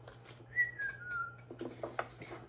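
A short, faint whistled tone, about a second long, that starts about half a second in and steps down in pitch twice before fading.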